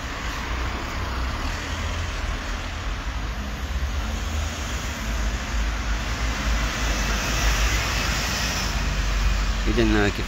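Road traffic: cars driving past on a city street, a steady low rumble with a passing car's tyre hiss swelling from about halfway to near the end.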